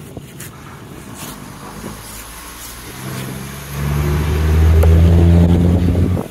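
A motor vehicle engine running at a steady low pitch, growing much louder from about halfway through and then stopping abruptly at the end. Before it, a few light knife chops into a palmyra fruit.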